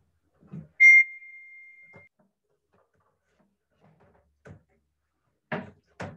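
A single bright ding about a second in, one clear tone that rings and fades over about a second, followed by a few soft knocks.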